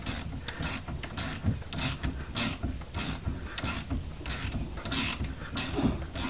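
Socket ratchet worked back and forth on a nut at the car's front steering joint, clicking in short bursts a little under twice a second, about ten strokes, as the nut is undone.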